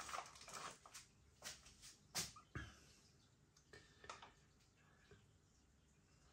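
Faint crinkling of a foil-lined snack bag as a hand reaches in for a salami crisp: a few short, scattered crinkles in the first four seconds, then near silence.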